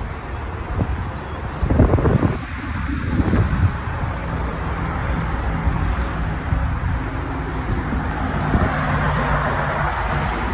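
Wind rumbling on a phone microphone outdoors, with gusts about two seconds in, over a steady low background hum.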